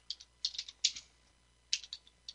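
Computer keyboard keys being typed: a quick run of separate key clicks, a pause of most of a second, then a couple more clicks near the end.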